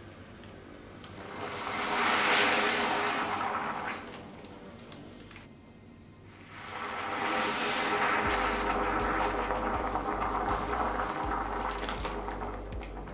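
Caustic soda solution fizzing and frothing in a glass bowl as it eats into the paint on the diecast parts, in two swells, the second longer, over quiet background music.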